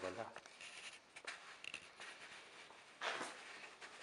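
Quiet small-room sound in a garage: faint talk, a few light clicks and a short rustle about three seconds in. The car's engine is not running.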